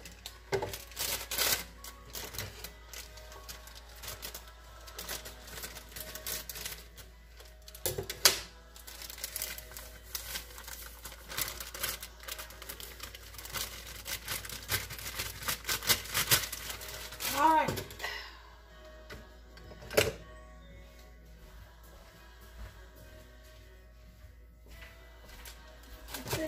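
Plastic bag of dry cornbread mix rustling and crinkling as the mix is shaken out into a plastic bowl, with small knocks of handling, then quieter handling with a single sharp knock about 20 seconds in.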